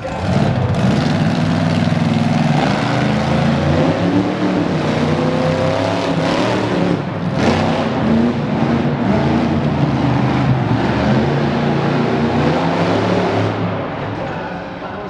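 Monster truck engine revving hard, its pitch rising and falling again and again. A brief sharp crack comes about seven and a half seconds in.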